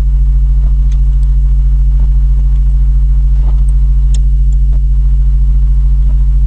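Loud, steady low electrical hum, a mains buzz with its overtones, picked up in the recording. Faint scattered clicks of computer keyboard typing sound over it.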